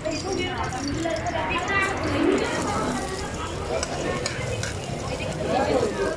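Chopped onions sizzling in hot oil in a wok on a portable gas stove, with people's voices chattering around.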